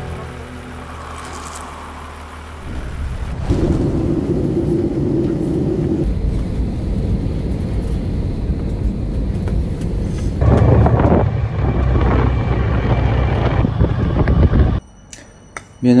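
Airliner cabin noise from a window seat over the wing: a loud, steady low rumble of the jet engines with a hum in it at first, cutting off suddenly near the end.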